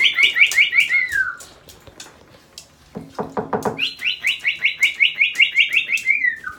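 Moluccan cockatoo calling in fast runs of short repeated high notes, about seven a second: one run fades out about a second in, and another starts about four seconds in and keeps going. About three seconds in, a brief burst of lower stuttering notes.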